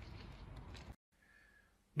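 Faint outdoor background noise, a low steady hiss and rumble with no distinct events, that cuts off suddenly about a second in, leaving near silence.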